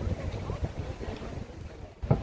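Wind buffeting a handheld camera's microphone: an uneven low rumble that eases toward the end, with faint voices of people nearby.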